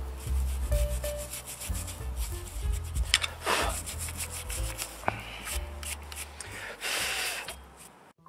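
A plastic toothbrush scrubbing a rusty steel brake caliper bracket in quick, repeated strokes, cleaning it during a brake pad change; the scrubbing stops near the end.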